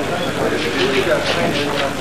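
Indistinct talking in the background, over the steady hiss of a worn tape transfer.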